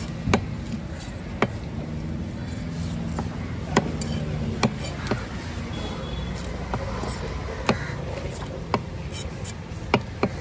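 Heavy cleaver chopping fish on a wooden chopping block: about seven sharp, irregularly spaced chops over steady background noise.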